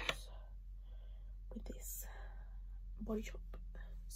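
A person whispering quietly, with a short sharp click right at the start.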